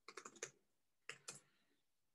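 Faint typing on a computer keyboard: a quick run of about five keystrokes in the first half second, then two more a little after one second.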